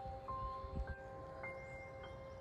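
Music: a rising run of bell-like chime notes, three new notes about half a second apart, each higher than the last and left ringing under the next.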